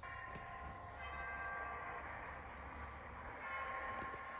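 An old film's soundtrack playing from a tablet speaker: several steady tones held together like a sustained chord, over a steady hiss.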